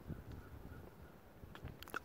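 Faint metal-on-metal scraping and a few light clicks near the end as a flathead screwdriver turns and slips in a rusted screw head, stripping it further.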